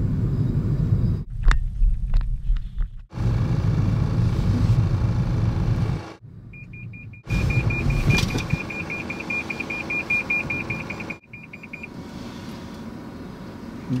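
Low road and tyre rumble of a 2016 Toyota Prius, cut short several times. About halfway through, a rapid high-pitched beeping starts and runs for about five seconds: the Toyota Safety Sense pre-collision warning alerting to the pedestrian ahead.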